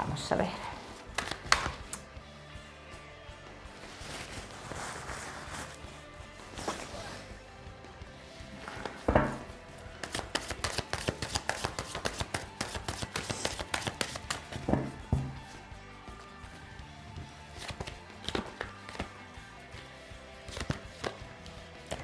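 A deck of tarot cards being shuffled by hand: a run of soft riffling clicks and rustles, busiest in the middle, with a few sharper snaps of cards, over quiet background music.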